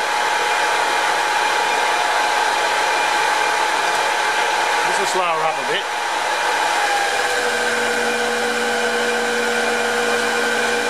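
Small metal lathe running and turning down a steel bar with a carbide insert tool: a steady machine hum with high whine tones. About seven seconds in, the tones shift to a different set of pitches.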